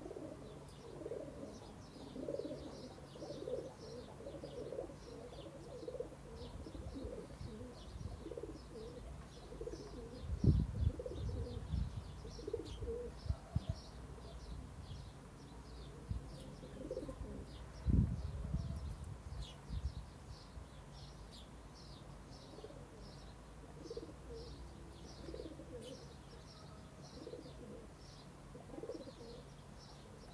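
Domestic pigeons cooing on and off, with small birds chirping in short, high, quick notes throughout. A few low thumps stand out as the loudest sounds, around ten to eleven seconds in and again around eighteen seconds.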